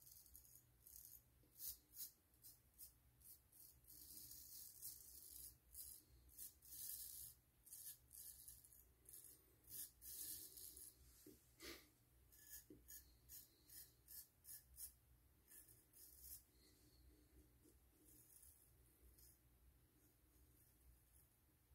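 Faint, quick scraping strokes of a straight razor cutting stubble across the grain on the neck, in short runs, thinning out near the end.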